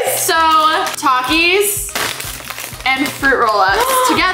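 Women's excited wordless voices, drawn-out exclamations and laughs, over background music with a steady beat; a chip bag crinkles as it is lifted out of an insulated lunch bag, with a quieter spell in the middle.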